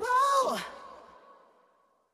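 A male pop vocal holds the song's last word, 'roll', for under a second. The backing stops with it, and the voice trails off in reverb to silence as the track ends.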